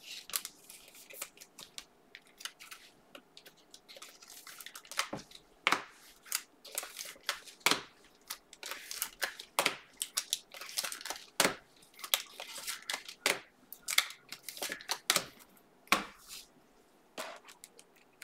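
Trading cards and clear plastic card sleeves handled close to the microphone: irregular crinkling, rustling and snapping as cards are slid, flipped and sleeved.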